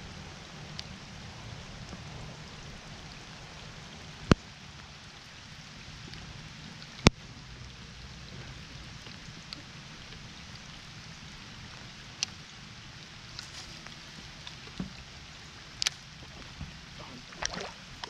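Light steady lapping of water against a bass boat's hull, broken by a few sharp clicks; the two loudest come about four and seven seconds in.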